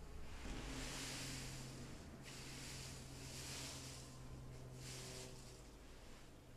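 Fresh green hops rustling as a long-handled rake pushes them across a kiln drying floor to level the bed. The sound comes in long sweeping swells, about three of them.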